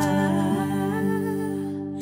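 A Tagalog (OPM) love ballad, with a voice holding one long hummed or sung note over soft, steady accompaniment. The note fades a little toward the end.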